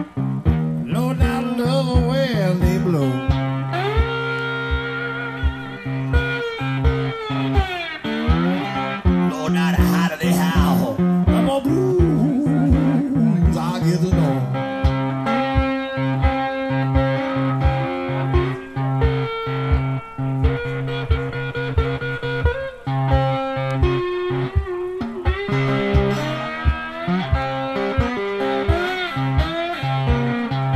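Amplified cigar box guitar playing an intense blues instrumental passage, with gliding and bending notes over held low notes. A steady thump keeps time about twice a second.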